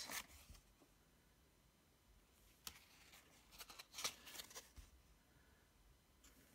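Faint rustling and flicking of thin cardboard Match Attax trading cards being slid through the fingers from a hand-held stack, a brief brush a little under three seconds in and a small cluster of soft flicks around four seconds in.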